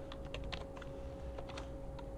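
Computer keyboard being typed on, a few light, separate keystrokes over a faint steady hum.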